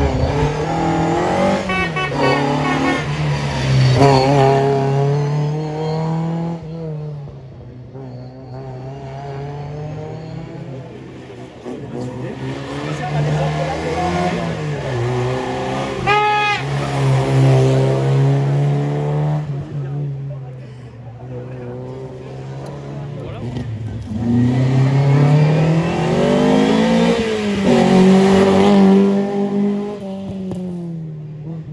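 Three historic rally cars pass one after another through a hairpin. Each engine winds down as the car brakes into the bend, then revs up hard as it accelerates out on full throttle.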